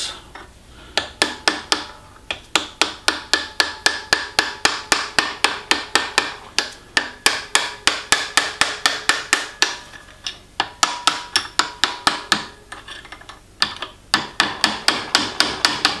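Hammer tapping a brass drift against the camshaft of a Ferguson TEF 20 diesel injection pump, about three light ringing taps a second with two short pauses, driving round a camshaft that is stiff because its plungers and tappets are sticking.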